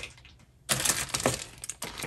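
Clear plastic bag holding a wax melt sample crinkling and rustling as it is handled, a quick run of irregular crackles and clicks starting a little under a second in.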